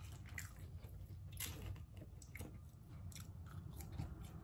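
Faint close-up chewing of fast food, with scattered soft mouth clicks and small crunches.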